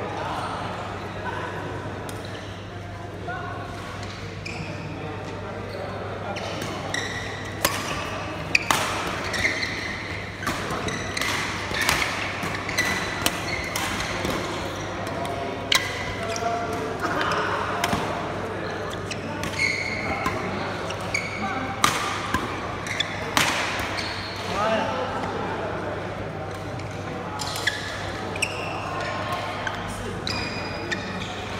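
Badminton rally in a large hall: rackets hitting the shuttlecock, sharp cracks at irregular intervals over a bed of voices, the hits coming thickest in the middle of the stretch.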